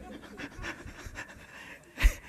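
A man laughing quietly into a microphone in short, breathy puffs of breath.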